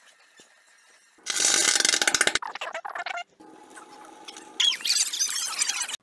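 A loud rattling burst about a second in, then a steady held tone and a run of high squeaks and squeals that glide up and down in pitch.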